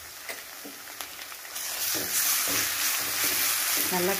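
Onions and freshly added ginger-garlic paste frying in oil in an aluminium kadai, with a few light taps of a spatula on the pan. About one and a half seconds in, the sizzle suddenly grows much louder as the mix is stirred with a wooden spatula.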